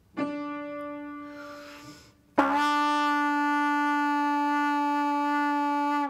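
A single piano note, concert D, struck and fading over about two seconds, then a B-flat trumpet sounds a long steady written E with valves one and two pressed, held at the same pitch as the piano.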